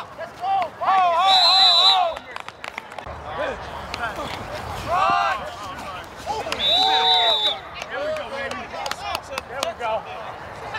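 Referee's whistle blown in two short shrill blasts, one about a second in and one past the middle, over players shouting on the field. The second blast comes as a ball carrier is brought down in a tackle, stopping the play.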